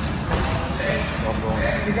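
Indistinct talking.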